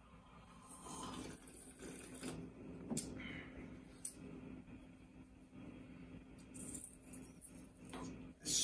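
Quiet sipping from a small ceramic tasting cup, then two light clicks about three and four seconds in as the cup is set down on the table, over a low steady room hum.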